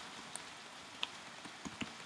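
Faint clicks of typing on a computer keyboard, a few light key taps over a steady low hiss.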